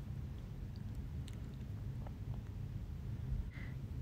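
Steady low room rumble with a few faint, small clicks of pottery and glass items being handled on a wire shelf.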